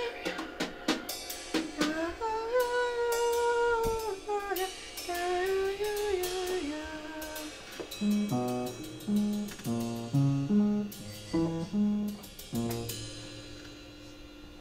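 Improvised jazz: a woman's voice sings long, sliding notes over scattered cymbal and drum strokes. About eight seconds in the voice stops and a piano enters with short, low, choppy notes, the drums still playing, and the music fades toward the end.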